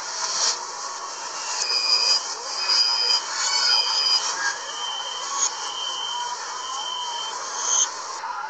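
Metro door-closing warning beeps played in reverse: a run of about six short electronic beeps, roughly one a second. The first three are higher-pitched and the last three lower, over a steady hiss of station noise.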